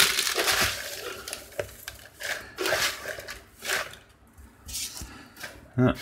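Shredded-paper packing fill and tissue paper rustling and crinkling in irregular bursts as hands rummage through a cardboard box, dying down about four seconds in.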